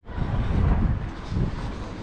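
Wind buffeting the camera's microphone: an uneven low rumble with a steady hiss above it.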